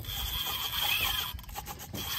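Large spinning fishing reel running under a heavy load on the line, a steady scratchy whir that stops just before the end.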